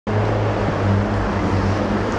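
A steady, loud rushing noise with a low hum under it, unchanging throughout.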